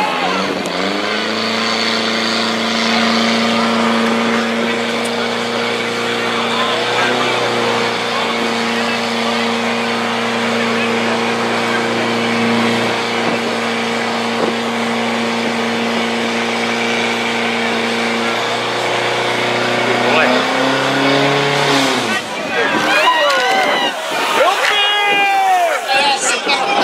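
A portable fire pump's engine running flat out at a steady, droning pitch while it drives water through the attack hoses. About twenty seconds in its note shifts briefly, and a couple of seconds later it stops, giving way to people shouting.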